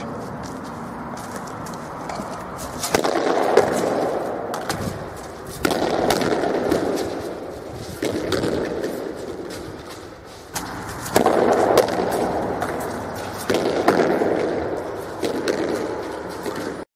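A hurley striking a sliotar again and again against a concrete wall: a run of sharp clacks of ash on leather and ball off wall, irregularly spaced. A rushing noise swells in suddenly every couple of seconds and fades behind them.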